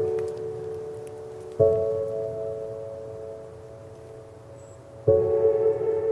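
Ambient background music of struck, bell-like notes that ring on and slowly fade, a new note sounding about a second and a half in and again about five seconds in.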